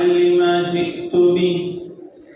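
A single voice chanting Arabic recitation in long, drawn-out melodic notes, breaking off near the end.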